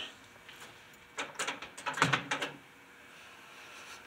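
Microwave oven door being opened: a cluster of sharp clicks and knocks from the latch and door, starting about a second in and lasting about a second and a half.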